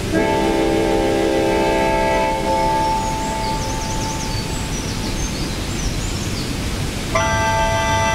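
Sustained synthesizer chord playing through a small portable speaker over the steady rush of a waterfall. The chord fades out after about three seconds, leaving the waterfall and faint high chirps, and a new chord comes in near the end.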